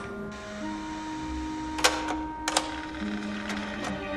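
Soft music with long held notes, over which the mechanism of a portable cassette recorder clicks sharply: one click about two seconds in and two close together about half a second later, as a cassette is loaded and the keys are pressed.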